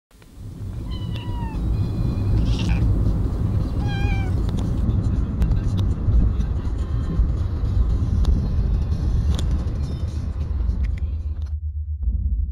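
Steady low road and engine rumble heard from inside a moving car's cabin, with a domestic cat meowing twice: a short falling cry about a second in and a shorter, wavering one about four seconds in.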